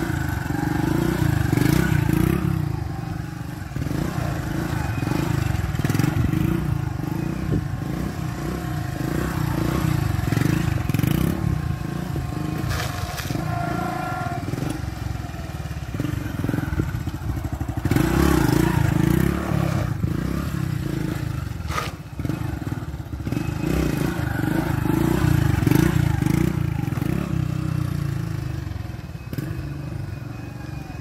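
Small motorcycle engine revving up and easing off over and over, with several loud swells, as the rider lifts the front wheel in wheelies. A few sharp clicks and knocks are heard along the way.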